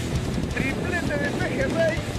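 Steady wind and surf noise at the water's edge, with several faint, short, high-pitched sounds gliding in pitch over it from about half a second in.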